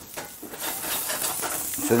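Asparagus frying in butter in a cast-iron skillet, the sizzle swelling about half a second in, with light scrapes of a metal spoon against the pan.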